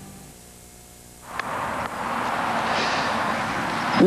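Background music fading out, then a steady outdoor hiss of wind and ambient noise starting about a second in, with a faint click or two near its start.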